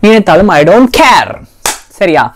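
A woman talking, then a single sharp click or snap near the end.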